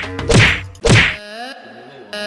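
Three loud slaps, each a sharp whack, about half a second apart, followed by a quieter stretch with a brief rising tone.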